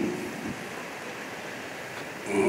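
Steady background hiss during a pause in a man's amplified speech, with the tail of his last word fading out at the start.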